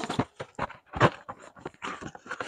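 Cardboard rakhi boxes and their plastic wrapping being pulled from a stack and handled: a quick, irregular run of rustles, scrapes and light knocks.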